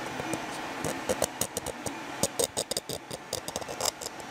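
A fingernail scraping across the layer lines of an unsmoothed 3D-printed PLA part: an irregular run of quick clicks and scratches over a steady hiss.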